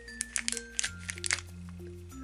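Clear plastic wrapper crinkling and crackling as a toy figure is pulled out of a small cardboard box, a cluster of sharp crackles in the first second and a half. Soft background music plays underneath.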